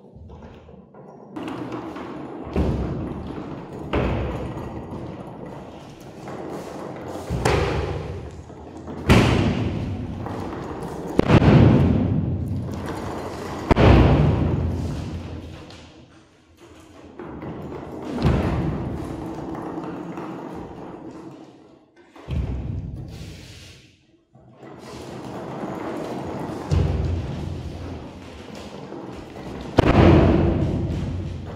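Deep booming thuds, about a dozen at uneven intervals of two to four seconds, each fading slowly, over a faint low held tone: a percussive soundtrack like timpani.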